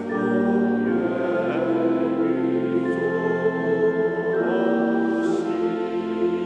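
Congregation singing a slow hymn together with organ accompaniment, long held notes moving from chord to chord every second or so.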